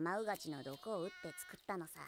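Anime character dialogue played at low volume: a high-pitched voice speaking Japanese, its pitch sliding up and down, with a brief high held tone a little past the middle.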